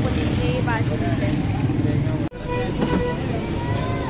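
Busy street noise: a steady rumble of traffic with people's voices in the background. The sound drops out for an instant just past halfway.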